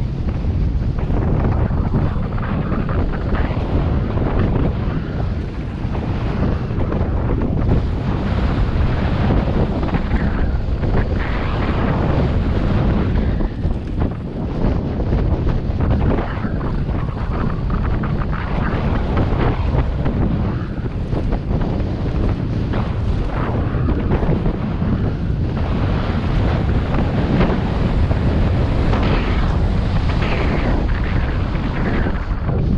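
Wind rumbling across an action-camera microphone on a mountain bike riding down a dirt downhill trail. It is a loud, continuous rush mixed with the tyres' rolling noise and frequent jolts from the rough track.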